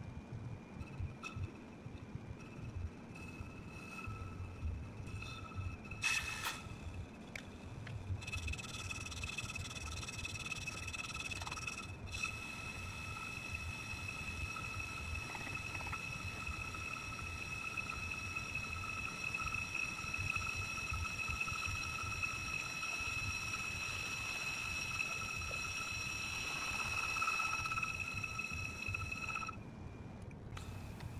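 On-car brake lathe spinning a cast-iron brake rotor while its cutting bits skim the rusted friction surface: a steady high-pitched ringing over a low motor hum. The ring is faint at first, grows strong about eight seconds in, and cuts off suddenly just before the end.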